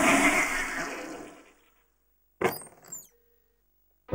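Cartoon sound effects: a loud rushing, clattering noise that dies away within about a second and a half. After a silence comes a short whoosh with squeaky rising and falling glides.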